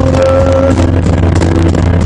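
Loud live band music: a long held low keyboard note with sustained tones above it, over drums and cymbal hits.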